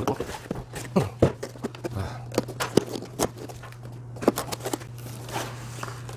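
Cardboard boxes and packaging being handled while unpacking: an irregular run of sharp knocks, taps and scrapes of cardboard as the boxes are shifted and items lifted out, over a steady low hum.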